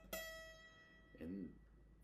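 Acoustic steel-string guitar: a single high note plucked up the neck, ringing and fading over about a second. The player calls these upper-fret notes ugly and says the guitar needs to be fixed.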